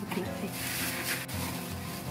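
Shredded kraft-paper packing fill rustling and crackling as handfuls are scooped and lifted from a box, over background music.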